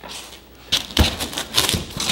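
Knocks and scraping clatter as a glass fish tank on a steel base plate is set down onto dry ice in a styrofoam box, with one louder thud about halfway through.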